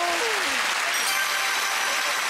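Studio audience applauding.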